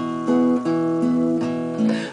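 Acoustic guitar with a capo on the second fret, strummed in a steady rhythm, its chords ringing with no voice over them.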